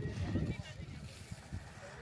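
Indistinct voices of people talking in the background, louder in the first half second and then faint.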